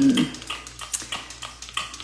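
A plastic trigger spray bottle squeezed again and again, giving a quick series of short clicks and sputters. The sprayer is not spraying properly.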